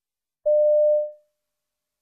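A single short electronic beep, one steady mid-pitched tone lasting about half a second, starting about half a second in and dying away quickly. It is the signal that marks the start of each recorded piece in a listening test.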